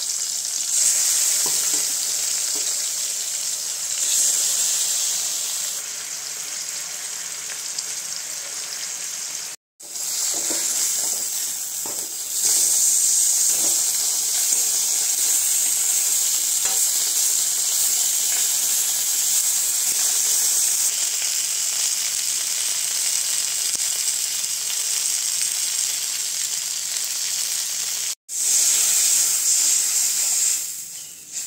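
Fish pieces shallow-frying in hot oil in a steel kadai: a steady high sizzle, with an occasional scrape of a metal spatula as the pieces are turned. The sizzle cuts out briefly twice.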